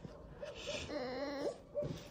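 Young red fox whimpering while being stroked: a long wavering whine, then a short one near the end.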